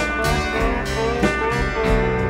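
Country band music: guitar playing a fill between sung lines, over a bass line.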